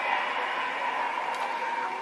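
Halloween-style background music from a phone app playing through the phone's small speaker: a steady held tone with a faint haze around it.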